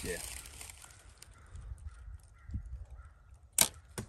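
Bear Archery Royale compound bow shot about three and a half seconds in: one sharp snap as the string is released. A fainter knock follows about half a second later as the arrow strikes the target.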